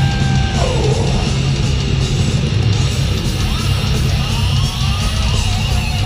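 Loud live blackened death metal from the stage, recorded from the crowd: distorted electric guitars and drums over a heavy low end. A held high note breaks off less than a second in, and sliding notes rise and fall about four seconds in.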